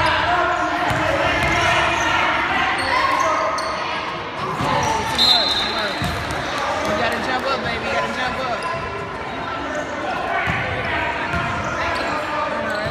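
A basketball dribbled and bouncing on a hardwood gym floor, with repeated low thuds echoing in the large hall under many overlapping voices of players and spectators. A short high squeak sounds about five seconds in.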